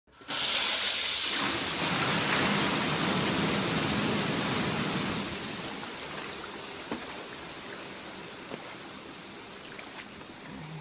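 Water gushing from a bank of many taps into a large bath: a loud, steady rush that starts suddenly and fades to a softer pour after about five seconds, with a few small ticks near the end.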